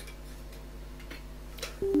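Computer mouse clicking: three short, faint clicks over a low steady hum, as Command Prompt is right-clicked and Run as administrator is chosen. A man's voice starts near the end.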